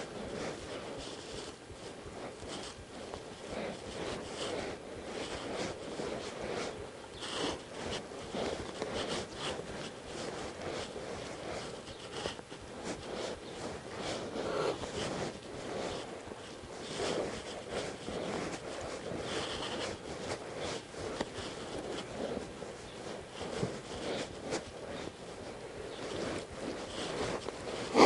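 Irregular small creaks, scrapes and shuffles from a saddled horse and its rider standing and shifting in a sand-floored pen.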